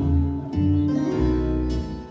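Portuguese guitar and classical guitar accompanying a fado, playing a short plucked-string fill between the singer's lines.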